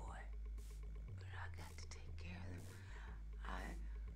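A person whispering in short, breathy phrases, too soft for words to be made out, over a steady low hum.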